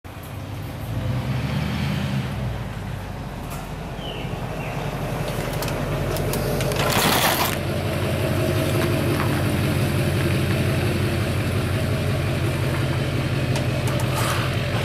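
Pickup truck towing a lawn-equipment trailer, its engine running steadily and growing louder as it pulls up. A short hiss sounds a little past halfway.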